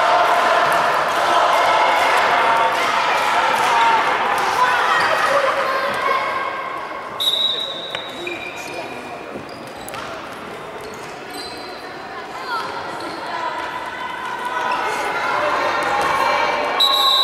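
Indoor futsal play: children's shouts and calls echoing in a large sports hall, with the ball being kicked and bouncing on the wooden floor. The shouting is loudest in the first few seconds, dies down through the middle and picks up again near the end.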